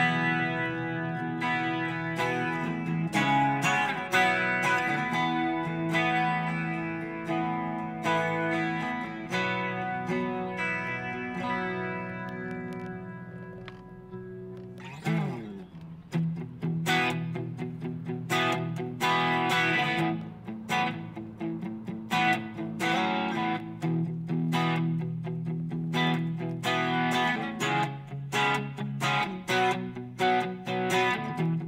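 Enya Nova Go Sonic carbon fiber guitar played through its own built-in amp and small speaker, with a thin tone and almost no deep bass. It starts with long ringing chords, has a brief pitch glide about halfway, then changes to rhythmic picked chords with sharp attacks.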